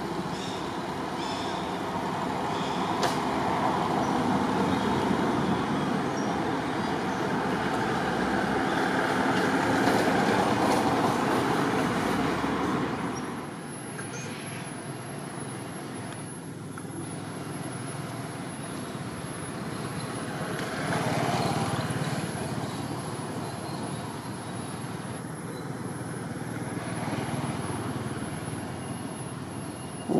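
Steady outdoor rushing noise that swells to its loudest about ten seconds in, drops off suddenly a few seconds later, then goes on more faintly with a brief swell near the twenty-second mark.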